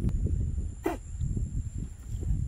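Wind rumbling on the microphone, with one short call that falls in pitch about a second in.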